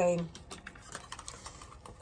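Faint, scattered clicks and taps of long acrylic nails and tarot cards being handled on a wooden tabletop.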